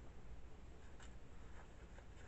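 Faint rustle of a paper page being handled and turned, with a light click about a second in.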